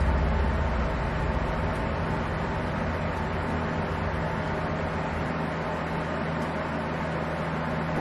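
A steady mechanical hum with an even hiss over it, a deeper low rumble underneath that fades out about five seconds in.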